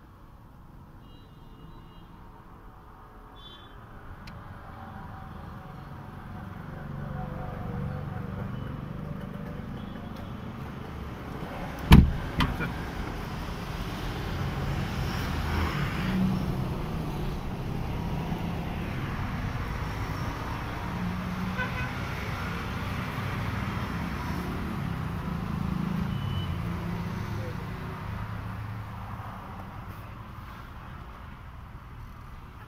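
Mercedes-Benz W123 wagon running, heard from inside the cabin: a low, steady rumble that grows louder over the first several seconds, with a single sharp knock about twelve seconds in.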